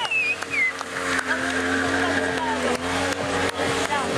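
Motorcycle engines running at held revs during stunt wheelies, over crowd noise.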